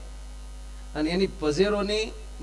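Steady low electrical mains hum in a pause, then a man's voice starts again about a second in.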